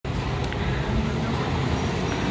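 Steady road traffic noise on a busy city street, with cars, taxis and a motor scooter running past.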